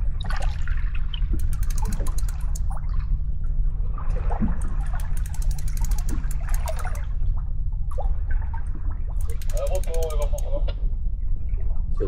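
A fishing reel being wound in against a fish on a hard-bent boat rod, its fast ticking coming in several short runs over a steady low rumble. A voice is heard briefly near the end.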